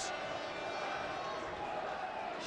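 Steady noise of a football crowd in the stands, an even background of many voices with no single sound standing out.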